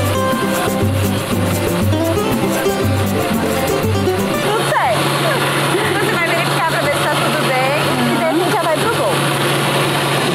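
Acoustic guitar music with a pulsing bass plays, and about halfway through an electric blender starts up and runs with a steady hum, blending eggs, oil, whole jabuticabas and sugar into cake batter, with voices over it.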